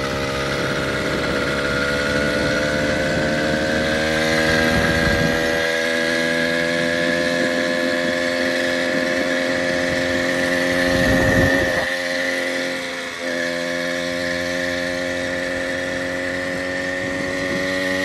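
Small motorized-bicycle engine running under way, its note climbing slowly over the first few seconds and then holding steady, with a brief rush of noise a little past halfway and a short easing-off just after. The engine has just been brought back to life with fresh gas and starting fluid and is running well.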